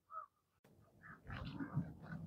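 Mostly quiet: a brief faint chirp-like blip at the very start, then an edit click, then faint rustling and handling noise of a package during the second half.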